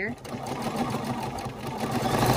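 Bernina 505 QE sewing machine stitching rapidly while free-motion quilting, with the Bernina Stitch Regulator foot on; the stitching grows louder toward the end.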